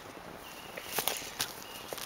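Rustling handling noise with a few sharp clicks, about a second in, halfway through the second half, and near the end, as a marmot pup is held down and dabbed with dye.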